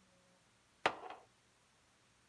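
A sharp clack about a second in, with a lighter second tap right after it: a small container set down hard on a kitchen counter while seasonings are measured out.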